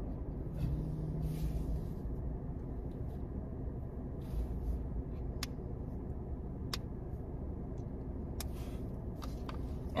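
Low steady rumble of a car idling, heard from inside the cabin, with a few faint ticks in the second half.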